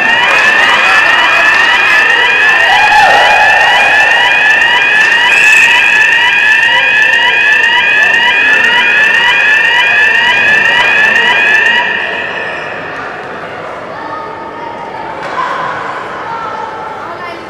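Ice rink's electronic goal siren sounding, a repeating whooping tone of short rising sweeps about twice a second, which stops about twelve seconds in, signalling a goal.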